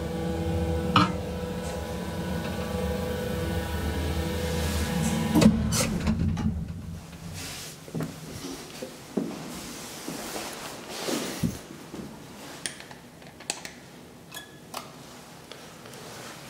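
Old Otis traction elevator running: a steady motor hum with a clunk about a second in. The hum stops with a thump about five to six seconds in, as the car halts. Scattered clicks and knocks follow as the car door is pushed open by hand.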